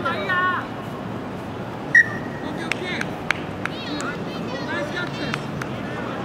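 Distant shouting from players and spectators at a rugby match, with a single short, sharp whistle blast about two seconds in, the loudest sound. A few sharp knocks follow over the next second or so.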